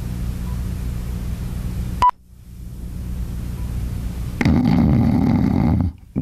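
Steady low electrical hum with hiss from the recording, in the blank gap between commercials. About two seconds in there is a sharp click with a short beep. From about four and a half seconds a louder, fuller noise sets in.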